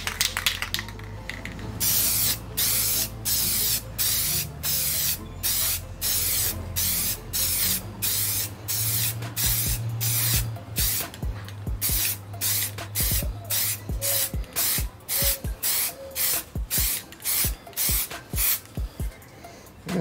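Aerosol can of Rust-Oleum gloss red spray paint hissing in short repeated bursts, about two a second, as a canvas is coated pass by pass. The bursts grow shorter and quicker near the end.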